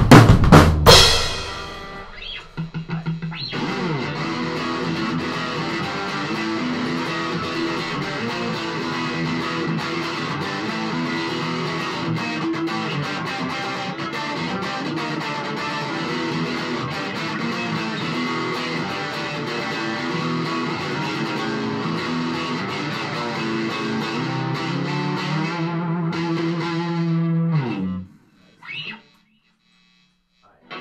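A drum kit's last hits, with cymbals ringing out and dying away over the first two seconds. Then, from about three seconds in, an electric guitar solo of fast notes, ending on long held notes before it stops suddenly near the end.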